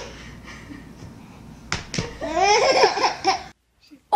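A baby laughing in bouncing bursts, loudest in the second half. Two sharp knocks come about halfway through, and the sound cuts off just before the end.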